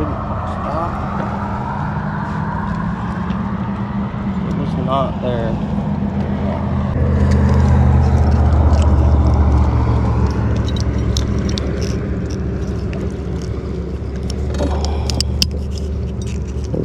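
A motor engine drones steadily, swelling louder from about seven seconds in and easing off after about eleven seconds. Small metallic clicks and rattles come near the end as pliers work a hook out of the fish's mouth.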